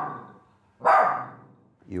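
Small shaggy dog barking: the tail of one bark fades at the start, then one sharp bark comes about a second in and rings away in the room. It is the fearful, defensive barking of a dog that is wary of a visitor.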